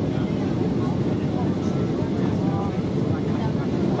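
Steady cabin roar of a Boeing 737-800 in flight on approach, the sound of its CFM56-7B turbofan engines and airflow heard from a window seat beside the wing. Faint conversation sits under the roar.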